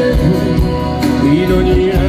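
A live rock band playing loudly, with acoustic guitar, electric bass and drums under a sustained melodic line.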